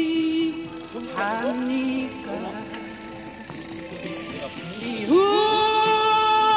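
A woman sings solo karaoke through a handheld microphone and small amplifier over a backing track. A held note ends about half a second in. The accompaniment carries on quietly alone, then she comes back in with a long held note near the end.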